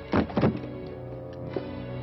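A sheet of paper and a leather folder being handled on a desk: two quick, loud sliding swishes, about a quarter and half a second in, over a steady orchestral music underscore.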